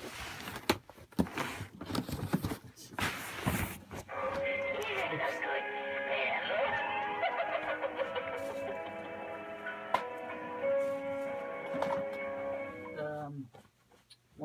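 Cardboard box being handled and shuffled, with rustling and knocks for the first few seconds. A tune then plays for about nine seconds and cuts off suddenly near the end.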